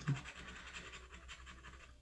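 A disc-shaped scratcher tool scraping the coating off a lottery scratch-off ticket in rapid, closely spaced strokes: a steady raspy scratching.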